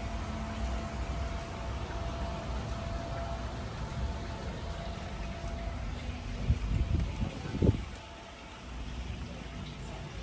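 Handheld phone microphone carried outdoors: a steady low rumble of wind and handling noise over faint ambience, with a few knocks about seven seconds in.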